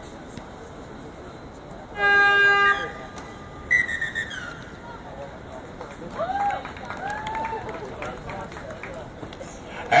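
A match hooter sounds one loud steady tone for just under a second, about two seconds in, signalling that playing time is up. A high falling call follows, then scattered shouts from players.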